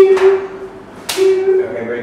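Sharp hand slaps of high fives between a man and young children: two in quick succession at the start, the first the loudest, then one more about a second in. Each slap is followed by a short voice sound.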